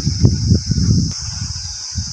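Crickets chirring in a steady high-pitched drone, with a low rumble through the first second or so and a few soft low knocks after it.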